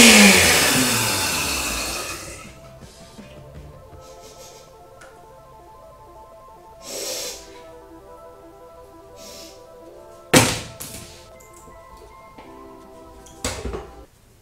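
Countertop blender with a glass jar, switched on briefly and winding down, its motor pitch falling over about two seconds. After that, background music plays softly, with two sharp knocks near the end as the blender's lid and glass jar are handled.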